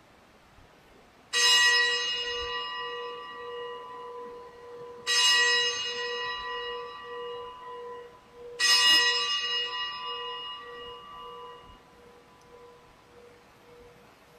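A bell struck three times, about three and a half seconds apart, each stroke ringing out and fading, with a low hum that pulses on between the strokes. It is rung at the elevation of the chalice, just after the words of consecration at Mass.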